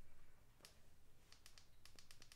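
Near silence broken by a few faint clicks, the presses of buttons on a work light's dimmer control as its brightness is adjusted.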